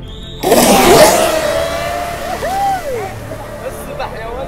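Electric RC race boats launching at the start of a race: a sudden loud rush of motor and water spray starts about half a second in and eases off over the next couple of seconds, with music playing throughout.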